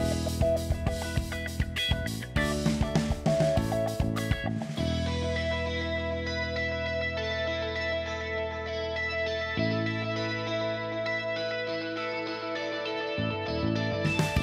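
Background music: guitar over a drum beat, the drums dropping out about a third of the way in for held chords and coming back near the end.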